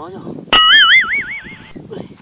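A sudden comedy sound effect about half a second in: a high warbling tone whose pitch wobbles up and down about five times in a second, then cuts off.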